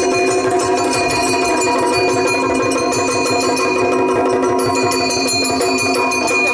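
Yakshagana instrumental accompaniment: a maddale, the two-headed barrel drum, and drumming played in a fast, steady rhythm over a sustained drone, without singing.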